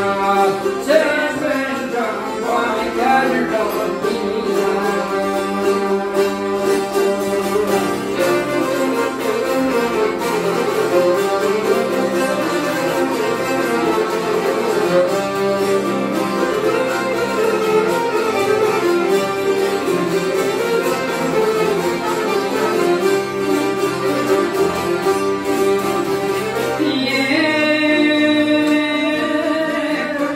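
Live Albanian folk ensemble playing an instrumental tune: a violin carries the melody over accordion and plucked long-necked lutes, steady throughout.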